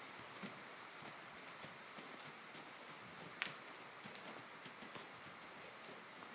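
Faint hoofbeats of a Percheron draft horse moving on a soft dirt arena floor, with one sharp click about halfway through.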